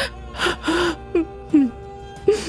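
A woman crying: a run of about five short, breathy sobs and gasps, over soft background music with held notes.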